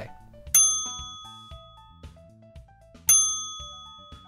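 Two bright bell dings about two and a half seconds apart, each struck sharply and ringing out slowly, over soft background music.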